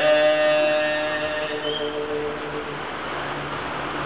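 Unaccompanied male voices hold a steady sustained note in naat recitation, with no words, fading out about two and a half seconds in to a faint room hiss.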